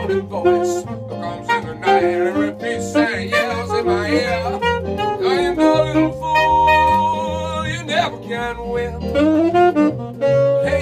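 Live jazz band: a saxophone plays the melody, with bends, over electric keyboard chords and a stepping bass line.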